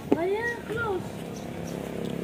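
A cat meowing twice, a longer call followed by a shorter one, both within the first second.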